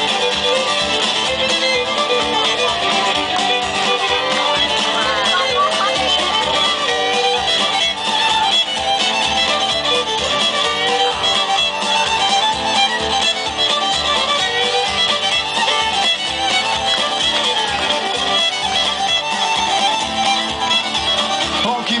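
Live Irish band playing an instrumental break, a fiddle leading over a steady beat.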